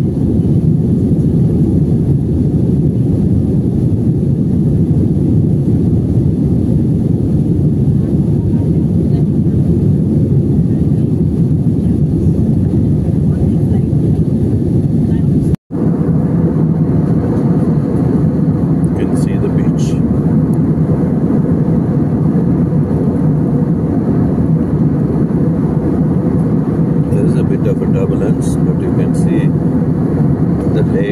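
Steady, low cabin noise of a jet airliner in flight, the engines and airflow heard from a window seat. The noise drops out for an instant about halfway through.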